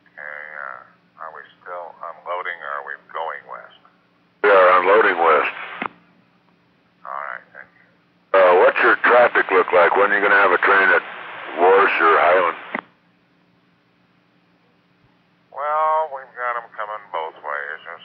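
Two-way railroad radio voice traffic: short spoken transmissions through a narrow-band radio, some loud and some faint, each cutting in and out, over a faint low steady hum.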